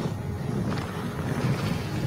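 Low, steady rumble with a wind-like noise, from the animated show's soundtrack.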